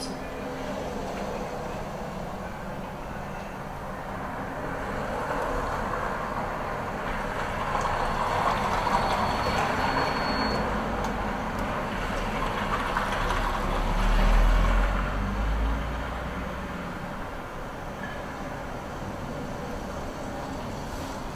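Steady background noise with no clear events, and a low rumble that swells and fades about three-quarters of the way through.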